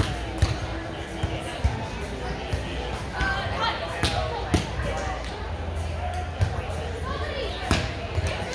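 Volleyball being played on sand: several sharp smacks of hands and forearms striking the ball, spread through the rally, echoing in a large hall over background chatter from other courts.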